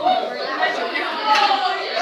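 Indistinct chatter of voices in a large room.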